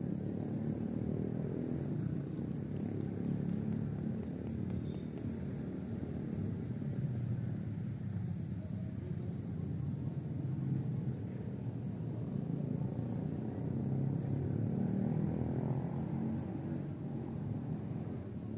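Steady low outdoor rumble of background noise, unevenly rising and falling, with a quick run of about ten faint high-pitched ticks a couple of seconds in.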